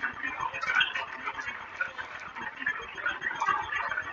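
Tinny, crackly audio from a phone's loudspeaker during a call to a recorded hotline: a dense, choppy mid-pitched noise with no clear words or tune.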